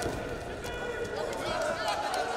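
Several voices calling and shouting over each other in an arena during a wrestling bout, with a few short sharp slaps or scuffs from the wrestlers on the mat.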